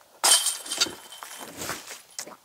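Disc golf putt striking the hanging chains of a metal basket: a sharp metallic crash about a quarter second in, then the chains jingle and ring as they settle, with another clink near the end as the disc drops into the basket's tray.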